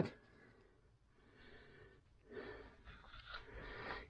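Near silence for about two seconds, then a person's faint breathing.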